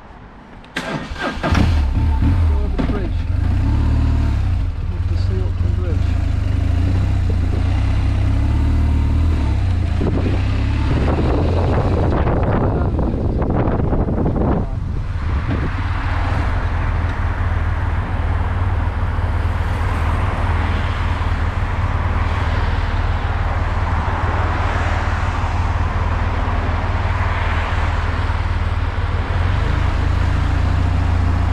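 Motorcycle engine starting about a second in, then running steadily with its energy sitting low in pitch. From about halfway on the bike is under way, and wind noise on the microphone rises over the engine.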